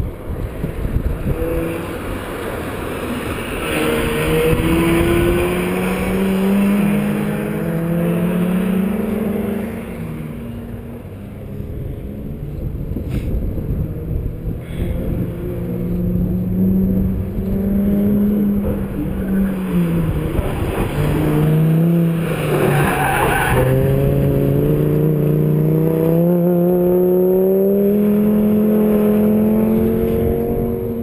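Autocross car's engine revving up and falling back again and again as it is driven through a cone course, with a burst of tyre skidding about two-thirds of the way through and a long rising rev near the end. Rough wind rumble runs underneath on the chest-mounted camera microphone.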